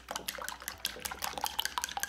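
Wooden chopsticks whisking raw eggs in a porcelain bowl: a quick run of clicks as the chopsticks strike the bowl, over the slosh of the beaten egg.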